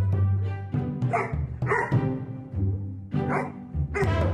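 A golden retriever barks about three times, short and sharp, over background music.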